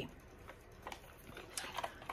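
Faint handling of a cardboard card box: a few light clicks and taps as the box is picked up and its lid opened.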